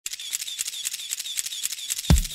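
Camera shutter firing over and over in quick succession, about four clicks a second.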